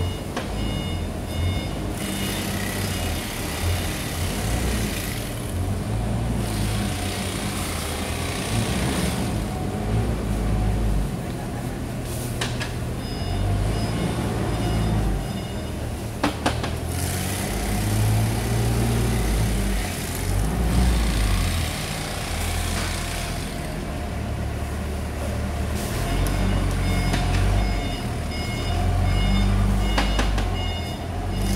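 Bagging machinery under a hopper running with a steady low rumble, with a rushing noise every few seconds as material pours into sacks. A repeating electronic beeping comes in three times, and there are a few sharp clicks.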